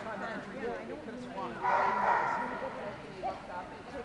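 Overlapping chatter of many people echoing in a large indoor hall, with a dog barking loudly in a burst about one and a half seconds in.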